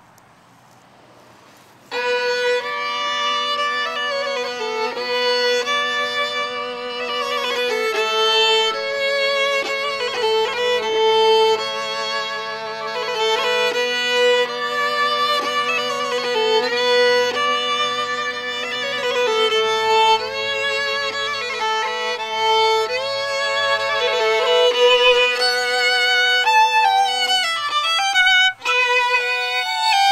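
Two fiddles playing a tune together, starting about two seconds in, with long held low notes sounding under the bowed melody. There is a brief break in the playing near the end.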